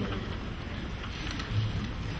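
Steady, even hiss of lecture-hall room tone and recording noise, with no speech.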